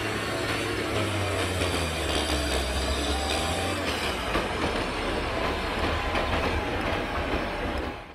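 John Deere 672G motor grader's diesel engine running steadily at work, a low drone under a broad rushing noise.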